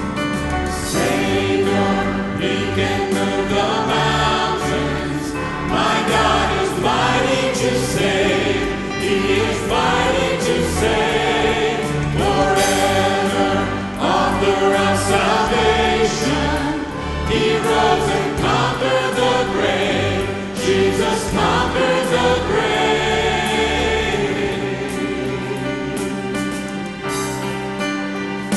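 A gospel vocal group of men and women singing together into handheld microphones, with a steady instrumental accompaniment underneath.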